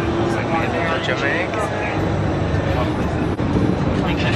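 Bus engine and road noise heard from inside the passenger cabin, a steady low rumble, with voices over it.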